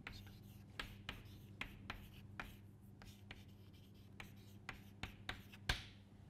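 Chalk writing on a chalkboard: faint, irregular short taps and scrapes as the chalk forms letters and symbols, with the sharpest stroke just before the end.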